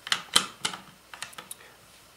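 A few sharp light clicks and taps, the loudest in the first second and fainter ones a little later, from an LCD display module's circuit board knocking against the printer's frame panel as it is fitted into its cutout.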